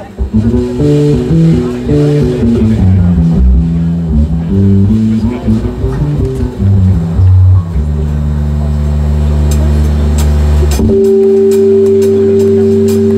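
Live progressive rock band playing an instrumental passage: a moving line of low notes, then long held notes from about two-thirds of the way in, shifting to a new held chord near the end.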